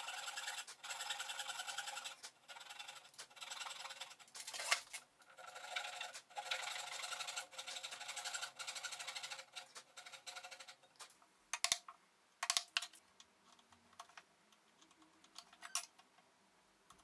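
Fine-toothed backsaw cutting into a wooden block, a rapid run of short rasping strokes in several bursts. It stops about eleven seconds in, and a few sharp clicks follow.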